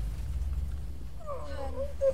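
A dazed crash victim moaning in a wavering pitch, starting about a second in, over a low steady rumble left after a car crash.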